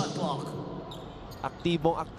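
A basketball bouncing a few times on a hardwood court, heard through arena ambience.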